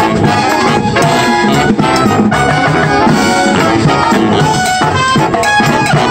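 A brass marching band playing live: saxophones, trumpets, trombones and sousaphones over a drum beat, with loud, continuous music.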